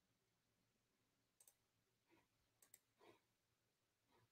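Near silence: quiet room tone with a few faint, short clicks, one about a second and a half in and a quick pair near the three-second mark.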